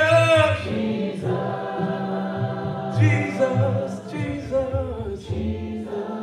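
A cappella worship singing: several voices sing a gospel hymn in harmony with no instruments, one man's voice leading through a microphone.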